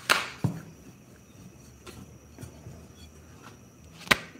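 Rolling chapati dough on a wooden rolling board: a sharp knock just after the start and a duller thump about half a second later, then a few light taps of the wooden rolling pin and dough against the board.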